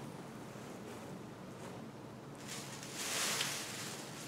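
Clothing fabric rustling as dresses are handled and moved, starting about halfway through after a quiet stretch of room tone.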